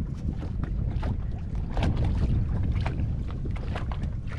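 Wind rumbling on the microphone on a boat at sea. Over it come a few short splashes and knocks, the clearest about two seconds in, from a hooked mahi-mahi thrashing at the surface beside the hull as it is brought in.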